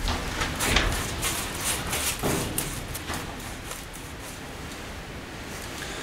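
Paintbrush working thick underseal onto a car's wheel arch: a run of short, irregular scrapes and taps over the first three seconds, then only low background noise.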